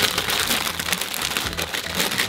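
Plastic bag of oyster crackers crinkling as it is handled and pulled open, a dense rapid crackle throughout.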